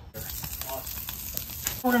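Egg sizzling in a hot stainless steel skillet on a gas burner, starting suddenly just after the beginning, while a metal spoon stirs it with light scrapes against the pan.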